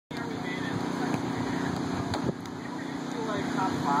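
Steady hum of the electric blower that keeps an inflatable basketball game inflated, with a couple of dull knocks of basketballs striking the inflatable. Voices come in near the end.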